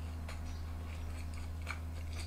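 A man chewing a mouthful of food, with a few soft clicks from his mouth, over a steady low hum.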